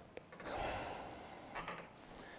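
A man's breath picked up by a clip-on microphone: one soft, drawn-out intake about half a second in, then a shorter, fainter breath near the end.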